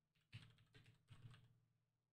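Near silence with a few faint computer keyboard clicks.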